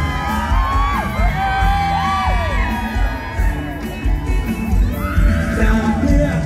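Live mor lam band music played loud through a PA with a heavy, steady bass beat. Many voices in the audience scream and cheer over it, in short rising and falling shrieks.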